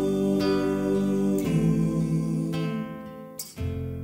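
Layered acoustic guitar loop playing back from a Boss RC-300 loop station, sustained chords changing about once a second. A sharp click about three and a half seconds in, with a brief drop in the sound before the loop carries on.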